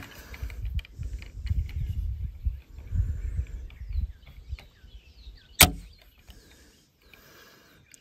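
A trigger pull gauge drawing on the PSA JAKL's mil-spec trigger, with low rumble and light handling noise. About five and a half seconds in comes a single sharp click as the trigger breaks and the hammer falls.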